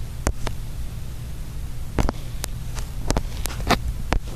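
Steady low hum and hiss inside a parked airliner's cabin, with a few short clicks and taps scattered through it.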